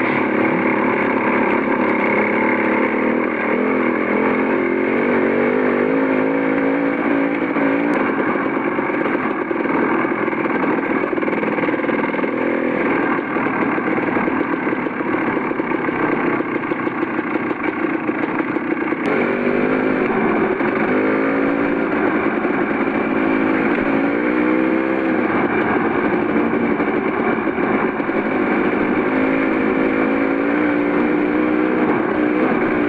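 Dirt bike engine running while riding at low speed, its pitch rising and falling with the throttle. The sound changes abruptly twice, at about 8 and 19 seconds in.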